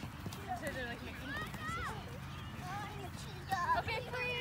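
Young children's high-pitched voices calling and chattering in short bursts, loudest near the end, with light taps of soccer balls being dribbled on grass.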